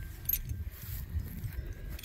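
Low rumble of a phone microphone being handled close against a pony, with a couple of faint metallic clinks from the pony's halter hardware.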